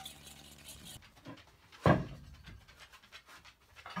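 A utensil whisking an egg-and-milk wash in a metal bowl in quick scraping strokes. After about a second that stops, and a little later there is a single loud thump.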